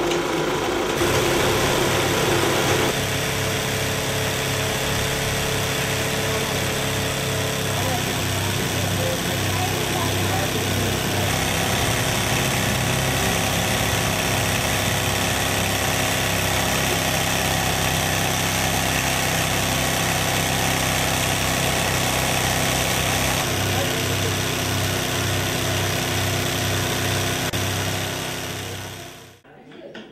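A motor-driven machine running steadily, with a low, even hum and a pulsing beat, cutting off suddenly near the end.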